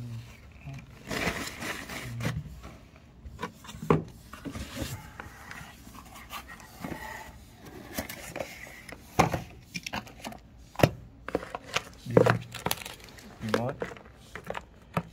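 Handling noise from a camcorder and its packaging: scattered clicks, knocks and rubbing as the camera is moved about and set down among plastic wrap and cardboard.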